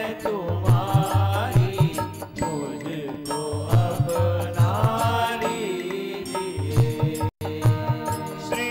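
Devotional bhajan singing: a man's voice sings a melody over held harmonium notes, with low drum beats underneath. The sound cuts out for a moment near the end.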